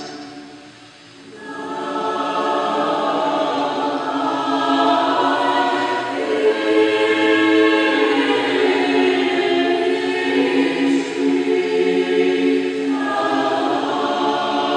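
Mixed choir of men and women singing a cappella in sustained chords. The sound drops briefly about a second in, between phrases, then the singing resumes.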